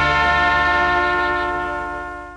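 Brass-led band holding the final sustained chord of a Thai luk krung song, fading out near the end.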